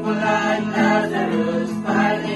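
A small group of voices singing a Christian thanksgiving song together, with an acoustic guitar playing along.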